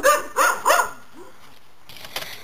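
A dog barking: three quick barks within the first second, then a fainter short one.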